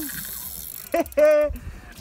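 Spinning reel's drag clicking and buzzing as a hooked fish runs and pulls line off the spool. About a second in come two short, loud shouts, followed by a rapid run of fine clicks.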